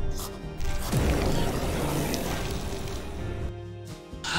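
Horror film soundtrack: a sustained music score, joined about a second in by a loud rushing noise that cuts off suddenly shortly before the end.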